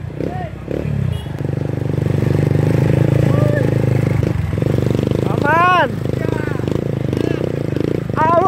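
Motorcycle engine running steadily at low speed, a little quieter for the first second. Partway through, a person gives one long shout that rises and falls in pitch.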